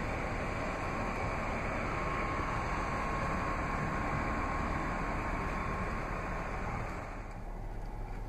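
Steady hum and rush of air from a running 2014 Jeep Cherokee Trailhawk, its engine idling and ventilation fan blowing, easing off a little near the end.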